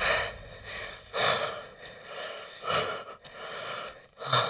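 A man breathing heavily in breathless gasps, one about every second and a half.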